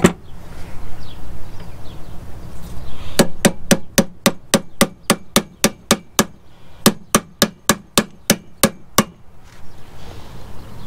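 Steel hammer rapping on a drive shaft U-joint yoke clamped in a vice, seating the new U-joint's bearing cap and snap ring. One sharp knock comes first, then two quick runs of ringing metal strikes, about four a second, with a short break between them.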